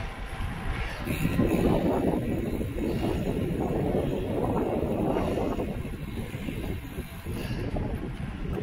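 Wind rushing and buffeting over the microphone of a handheld DJI Osmo Pocket while riding a road bike. It grows louder about a second in and eases off near the end.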